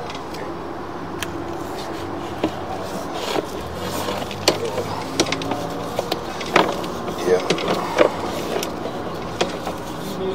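Sewer inspection camera being pulled back through a drain line: irregular clicks and knocks of the push cable and camera head, more frequent from about halfway through, over a steady low hum and faint voices.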